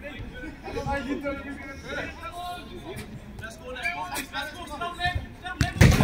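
Men's voices calling and chatting during play, with a laugh about a second and a half in. Near the end comes a single sharp thump, the loudest sound, as a football is kicked.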